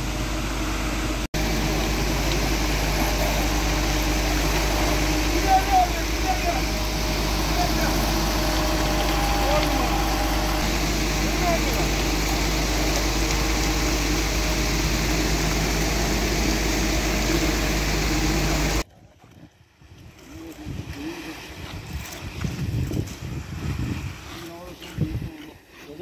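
Concrete mixer truck running steadily as fresh concrete pours down its chute, with workers' voices underneath. About two-thirds of the way in this cuts off suddenly to a much quieter, uneven stretch of wind buffeting the microphone.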